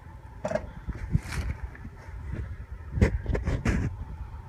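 Handling noise of a rubber RC truck tire and plastic wheel being turned over in the hands: irregular rustling and scrapes, with a cluster of sharper knocks about three seconds in.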